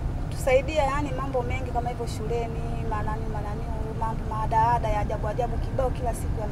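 A woman talking over the steady low rumble of a bus around her.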